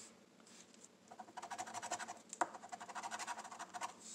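Metal scratcher coin scraped rapidly back and forth over a lottery scratch-off ticket, rubbing off the coating in quick strokes, about ten a second, starting about a second in.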